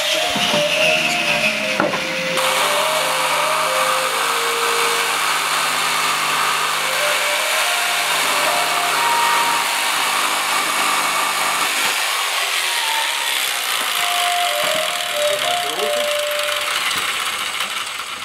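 Electric jigsaw cutting through a wooden board, a steady rasping run with a lower hum that comes in a couple of seconds in and drops away about two-thirds of the way through. A simple melody plays over it.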